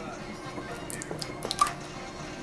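Small plastic jar of cheese dip being opened by hand: a few crackles as the lid and seal come off, ending in a sharper click about one and a half seconds in.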